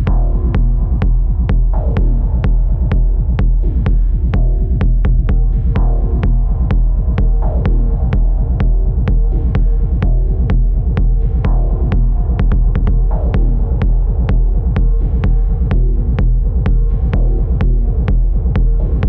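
Live hardware techno: a steady kick drum at about two beats a second over a constant deep bass drone, with layered synthesizer notes and several falling pitch sweeps from a modular synthesizer.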